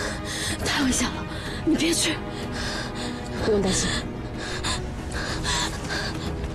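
A young woman's distressed gasps and breathy, half-voiced cries, several of them, over steady background score music.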